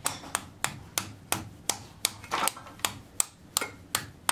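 A small hammer tapping a plastic wall plug into a drilled hole in a brick wall: about a dozen light, even strikes, roughly three a second.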